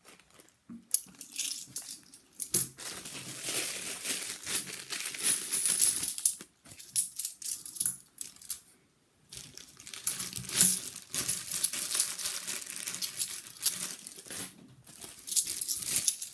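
£2 coins clinking together as they are picked up and sorted in the hand, mixed with the crinkle of the plastic coin bags. The handling goes in spells, with a couple of short pauses.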